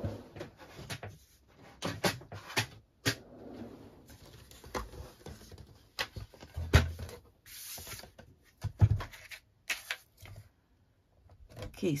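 Handling clatter as a Stampin' Up! Simply Scored plastic scoring board is brought in and set down: scattered knocks and taps with some paper rustling, the loudest a single low thump a little past halfway.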